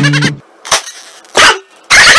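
A man's loud, bleat-like screaming laugh in broken bursts: a cry that stops shortly after the start, two short bursts in the middle, then loud again near the end.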